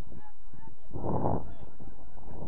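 A single short, rough shout from a player on the field, about a second in, over a steady low rumble.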